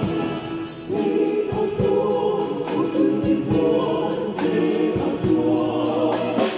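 Large mixed church choir singing a hymn together in harmony, many voices at full strength.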